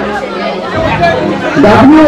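Speech only: a man talking into a handheld microphone, his voice getting louder about one and a half seconds in.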